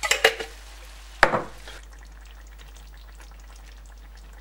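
Vegetables frying in a pan with a low, steady sizzle. A few clatters of a utensil against the pan come at the start, and one sharp knock about a second in.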